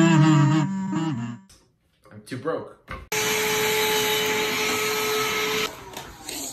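Background music fading out, then after a short gap a small electric motor running steadily with a hum and hiss for about two and a half seconds, starting and stopping abruptly.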